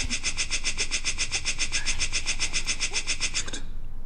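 A rapid, even ticking, like an impact sprinkler's fast return stroke, done as the punchline of the sprinkler joke. It stops abruptly a little before the end.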